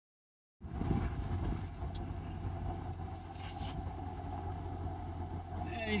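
A vehicle's engine runs steadily, heard as a low, even rumble from inside the vehicle.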